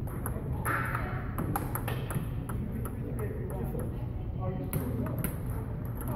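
Table tennis rally: a celluloid/plastic ping-pong ball being struck back and forth, a quick irregular series of sharp clicks from the ball hitting the paddles and bouncing on the table.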